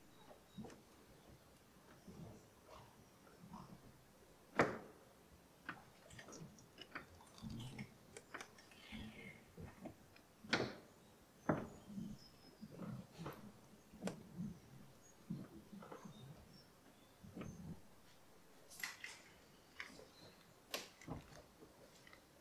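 Faint, scattered clicks and low knocks, the sharpest about four and a half seconds in and again near the middle, as the Mercedes W123's steering is turned back and forth by hand with the engine off to push fresh power steering fluid through the system.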